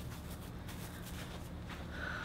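Soft footsteps on a grass lawn over a faint, steady outdoor background hum.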